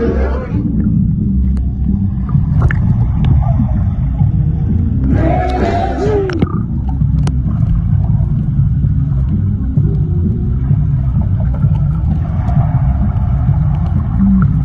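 Dull, muffled underwater rumble of pool water moving around a submerged camera microphone. There is a brief, clearer burst about five seconds in, and the sound opens up again near the end as the camera nears the surface.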